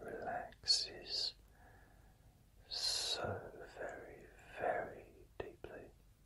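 A man whispering softly and closely, words not clearly made out, with sharp hissed 's' sounds; he whispers in two phrases with a pause of about a second between them.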